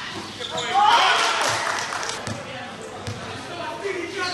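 Basketball game sounds: a ball bouncing on the court, with players and spectators shouting. A loud yell and cheer rises about a second in.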